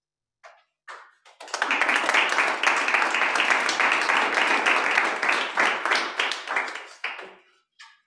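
Audience applauding: a couple of scattered claps, then full clapping from about one and a half seconds in that dies away shortly before the end.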